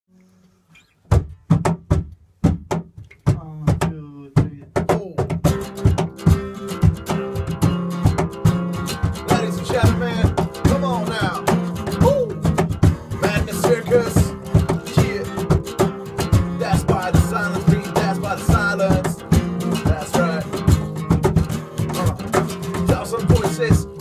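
Acoustic band playing an instrumental intro: after about a second of silence come a few sharp, spaced strikes, then from about five seconds a steady driving rhythm of strikes with acoustic guitar and a held low note.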